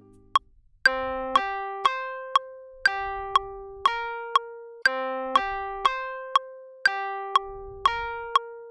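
Software electric piano (Ableton's Wurli-style hard piano) playing a short phrase of single notes and a two-note chord, one note every half second with gaps, recorded into a two-bar looper so the phrase repeats every four seconds. Sharp metronome clicks run underneath, twice a second.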